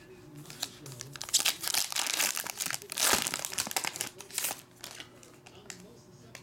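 A 2020 Panini Select Soccer trading-card pack being torn open and its wrapper crinkled. There is a dense run of small crackles and rustles, loudest about three seconds in, which dies down near the end.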